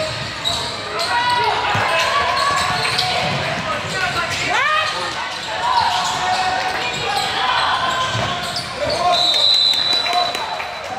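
Indoor basketball game: sneakers squeaking on the hardwood court, the ball bouncing, and players and spectators calling out, all echoing in a large gym. Near the end a referee's whistle blows a steady note for about a second as play stops.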